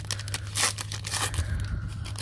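Foil wrapper of a Donruss basketball card pack crinkling and tearing in the hands as a rapid run of small crackles, over a steady low hum.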